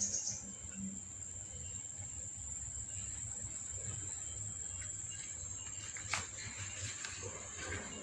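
A steady, high-pitched insect trill with a low rumble underneath, and one sharp click about six seconds in.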